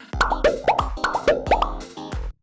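A quick run of about eight short rising blips, a cartoon-style editing sound effect, over electronic background music.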